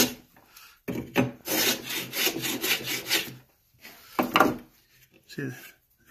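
Small homemade wooden sash plane with an O1 tool-steel iron taking a thin moulding shaving along a pine sash bar: one scraping stroke of about two and a half seconds, then a short scrape near the end. The pine's grain is tearing out under the cut.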